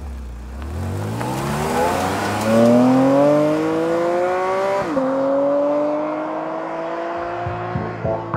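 Porsche 718 Cayman GT4 RS's naturally aspirated 4.0-litre flat-six accelerating hard from a standstill, the revs climbing steadily. One upshift about five seconds in drops the pitch briefly, then it climbs again, fading as the car pulls away.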